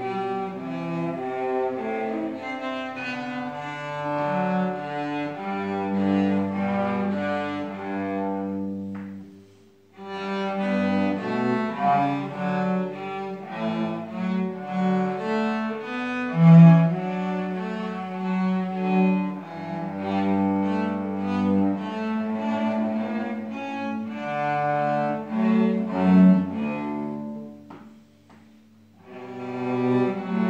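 Two cellos playing a bowed duet, sustained notes moving in two lines against each other. The music stops briefly twice, about nine seconds in and again near the end.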